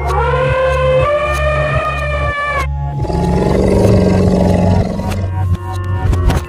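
Animal roar sound effects over background music with a steady beat: a long high-pitched call lasting about two and a half seconds, then, after a short break, a lower rough roar for about two seconds.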